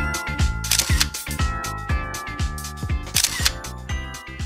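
Background music with a steady beat of about two kick drums a second under held chords and crisp high percussion.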